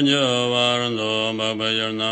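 A man chanting a Tibetan Buddhist tantra in a low voice, holding one note for about the first second, then moving into shorter chanted syllables.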